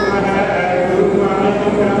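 A man's voice chanting a prayer in long, wavering held notes.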